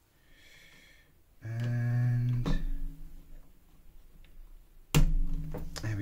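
A man hums a steady low "hmm" for about a second, then again briefly near the end, with a few sharp clicks of plastic LEGO pieces being pressed together.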